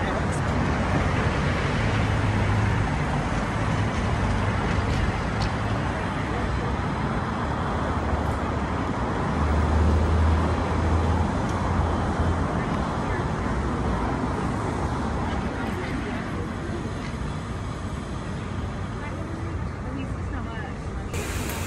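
City street traffic: cars and other vehicles passing in a continuous low rumble, swelling about halfway through and easing off toward the end.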